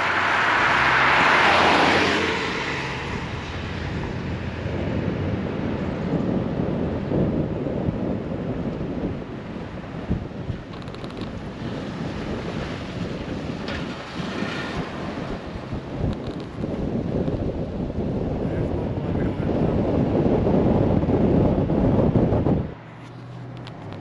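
Wind rushing over the microphone and road noise through the open window of a moving pickup truck. It is loudest in the first two seconds and stops abruptly near the end.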